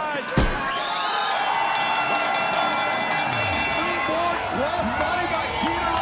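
One hard slam on the wrestling ring mat about half a second in, then crowd shouting and cheering in the arena, with a bright ringing sound for about two seconds just after the slam.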